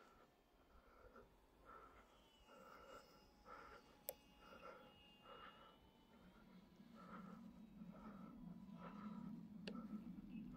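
Near silence, with the faint thin whine of a small electric RC plane's twin motors far off, and two light clicks, one about four seconds in and one near the end.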